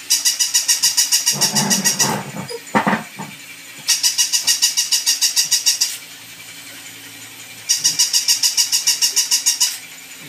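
Battery-operated walking plush toy dog's electronic sound: bursts of about two seconds of fast, evenly repeated high-pitched beeping yaps, about seven a second. It plays three times with pauses between.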